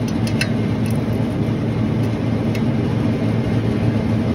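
Semi-hermetic refrigeration compressor running with a steady low hum, with a few light metal clicks as a ratchet wrench is fitted onto the king valve's stem.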